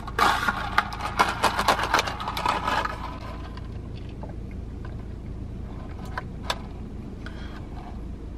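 Plastic drinking straw pushed down through the slit of a plastic cup lid, squeaking and scraping in quick rubbing strokes for about three seconds. Then only a steady low hum remains, with a faint click or two.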